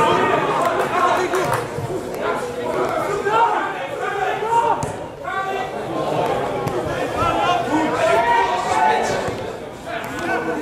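Many people talking at once: a steady babble of overlapping voices with no single clear speaker.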